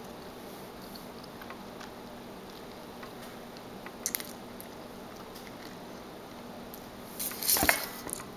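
Quiet mouth sounds of someone eating the soft, custard-like flesh of a sugar apple over a steady low room hum, with a brief louder burst of noise near the end.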